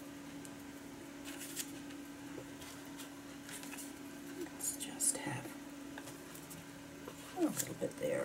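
Paper being handled and slid on a cutting mat: light, brief rustles as a sheet is positioned, about a second in and again around the middle, over a steady low hum.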